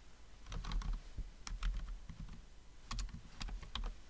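Typing on a computer keyboard: separate keystroke clicks coming in a few short runs, with dull thuds beneath them.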